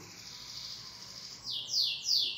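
A bird calling with a run of quick, evenly spaced falling chirps, about three a second, starting about one and a half seconds in.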